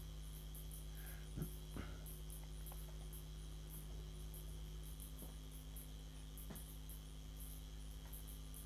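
Crickets chirping faintly, a stream of short, very high-pitched pulses, over a steady low hum. Two soft knocks sound about a second and a half in.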